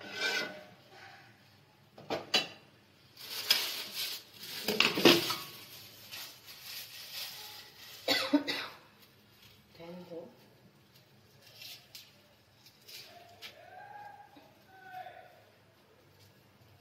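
Steel ladle stirring and scraping against a steel cooking pot of curry, a few rasping strokes in the first half, the loudest run between about three and five seconds in, with one more scrape about eight seconds in.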